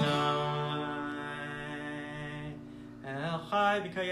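A man sings with acoustic guitar accompaniment. He holds a long note that fades over about two and a half seconds, then starts a new sung phrase about three seconds in.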